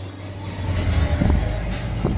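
Subaru WRX STI's turbocharged flat-four engine and exhaust growing louder as the car pulls up alongside, heard from inside another car, with music playing.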